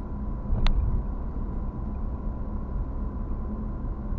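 Moving car's engine and tyre rumble heard inside the cabin, steady and low, with one sharp click about two-thirds of a second in.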